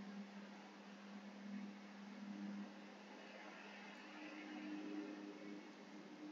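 Near silence: faint room tone, a steady low hum with soft hiss; the played video clip carries no sound of its own.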